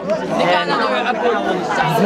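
Speech only: young men's voices talking over one another.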